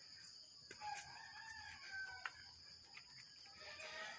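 A rooster crowing faintly in the distance, one drawn-out call starting about a second in, over a steady high hiss.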